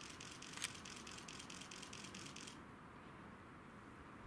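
A large sheet of paper rustling and crackling faintly as its curled end is pressed flat. The crackle stops about two and a half seconds in, and there is one sharp tick shortly after the start.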